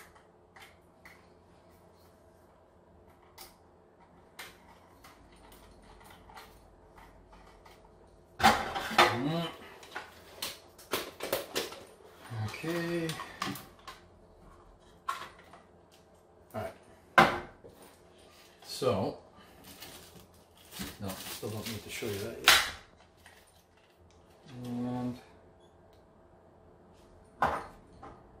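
Hands handling a plastic baseboard-heater thermostat and its wires at a wall electrical box: scattered clicks, rattles and scrapes of plastic and wire. It is quiet at first, and the handling noise runs on and off from about eight seconds in.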